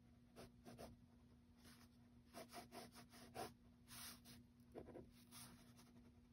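Faint scratching of a pen on sketchbook paper, in a series of short strokes with brief pauses, as pencilled-in lines are gone over to darken them.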